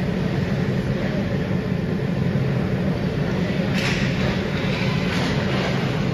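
Indoor ice rink during hockey play: a steady low rumble fills the arena, with two brief scraping or clattering sounds from skates or sticks about four and five seconds in.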